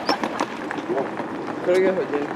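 Steady outdoor background noise on a railway platform, with a few faint clicks and a short burst of a man's voice near the end.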